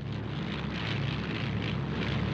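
Piston aircraft engines running steadily in flight, a continuous even drone with a low hum.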